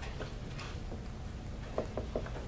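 Dry-erase marker tapping and scratching on a whiteboard in short, irregular strokes as handwriting goes on, over a low steady room hum.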